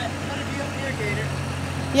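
Boatyard travel hoist's engine running steadily at idle, a low even hum, with faint voices over it.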